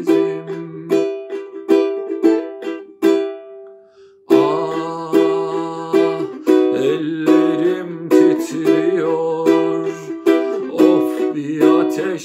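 Ukulele strummed in repeated chords. A little past three seconds in, the strumming stops and a single note rings and fades. Strumming starts again just after four seconds.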